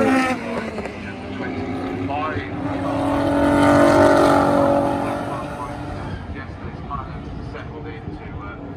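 Two racing cars pass close by at speed, their engine note swelling to its loudest about four seconds in and then fading.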